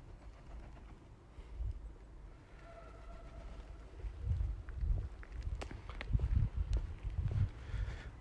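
Footsteps of a person walking on paving slabs, dull thuds about two a second from about halfway through, with a few sharp clicks among them.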